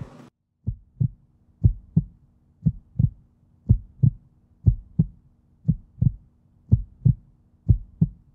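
A heartbeat-like sound effect: evenly spaced pairs of low thumps, about one pair a second, over a faint steady low hum.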